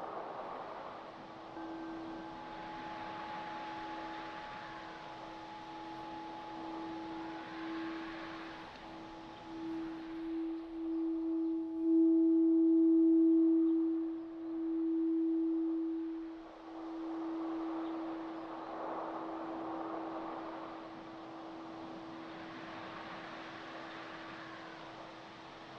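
Crystal singing bowl ringing a steady tone that swells loudest about halfway through, with fainter higher tones sounding alongside it for a while. Wind rises and falls in gusts underneath.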